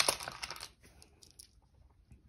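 Small wooden stamp-game tiles clattering together as a handful is gathered up: a quick run of clicks in the first half second or so, then a few faint clicks.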